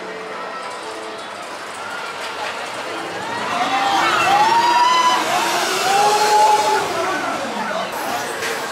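A Maurer spinning roller coaster car rolling past on its track, its riders shouting in several rising and falling whoops as it goes by, over a steady background of voices.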